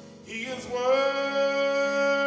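Gospel vocal ensemble singing over a sustained keyboard; from about half a second in, the voices rise into one long held note.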